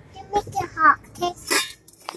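A toddler's voice in several short, high-pitched babbled utterances.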